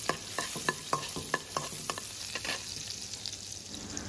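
Chopped shallots, ginger and garlic sizzling in hot oil in a kadai while a perforated metal ladle stirs them, its clicks and scrapes against the pan coming about four a second in the first half, after which only the steady sizzle remains.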